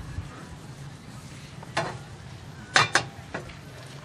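A few sharp clicks and knocks, the loudest pair about three quarters of the way through, over a faint steady hum.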